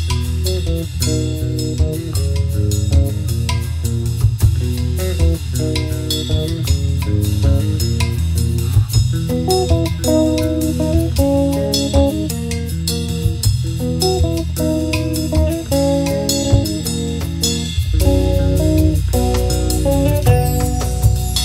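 A band playing an instrumental passage: electric bass guitar carrying a steady low line, drum kit with cymbal hits and hand-played drum, over short repeated chords in the middle range.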